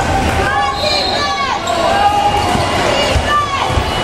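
Basketball game on a hardwood gym floor: sneakers squeaking on the court in short chirps and the ball bouncing, with players' voices in the hall.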